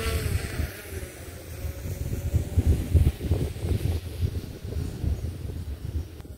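Wind buffeting the microphone in uneven gusts, with the faint whine of a DJI Mavic 3 quadcopter's propellers overhead, its pitch dipping slightly in the first second or two.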